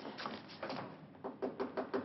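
A rapid run of sharp knocks, about six in a second, in the second half.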